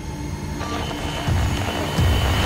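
Low rumble of a car in motion heard from inside the cabin, with a thin steady whine over it. It grows louder about a second and a half in.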